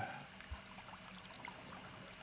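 Faint steady hiss with a low hum under it, and one soft low thump about half a second in.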